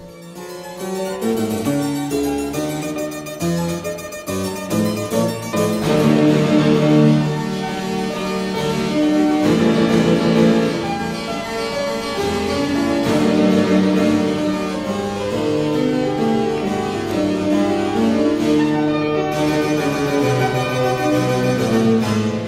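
Harpsichord and fortepiano playing together in a fast classical-era movement (Presto), with quick running notes passed between the plucked, bright harpsichord and the softer-toned fortepiano.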